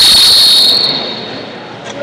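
Wrestling referee's whistle: one loud, steady, high-pitched blast of about a second that starts the wrestling, then dies away in the gym's echo.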